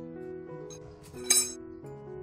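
Background music, with a single sharp metallic clink and a brief ring a little past halfway: a steel rebar-tying hook striking the reinforcing bars of a rebar cage while tie wire is twisted at a joint.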